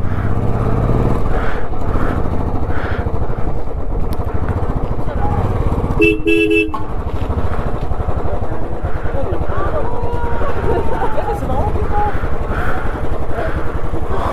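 Motorcycle engine running at low speed as the bike rolls forward and then sits idling. A vehicle horn gives one short blast about six seconds in.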